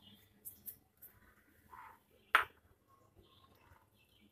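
Small glass ingredient bowls handled over a stainless steel mixing bowl: a few faint taps, then one sharp clink of glass on a dish a little over two seconds in.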